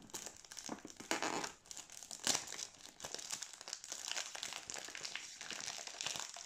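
Cellophane wrapping on a perfume box crinkling in irregular bursts as hands work it off the box, with the loudest crackle a little over two seconds in.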